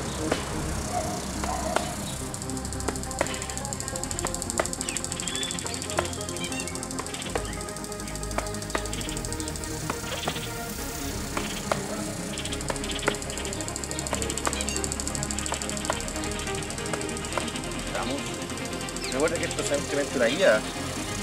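Boxing-gloved hook punches landing on a padded striking bag strapped to a tree trunk, sharp slaps at an irregular pace of roughly one a second, over background music.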